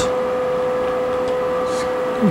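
Steady, high-pitched electrical whine with a low hum from a CNC-converted knee mill, holding one unchanging pitch.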